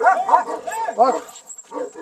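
Two Kangal-type shepherd dogs barking in a quick run of short calls while they wrestle each other on their chains in rough play. The calls fade toward the end.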